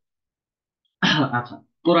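A man's voice breaks about a second of silence: he clears his throat, then starts speaking again just before the end.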